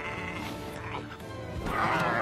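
Film score music, with a wavering, squealing call from the infant Tyrannosaurus rex rising up loud near the end.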